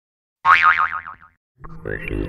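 A cartoon-style 'boing' with a fast-wobbling pitch, lasting under a second after a moment of silence. Other sound starts up near the end.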